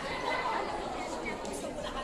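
Indistinct chatter of many voices in a large, reverberant hall.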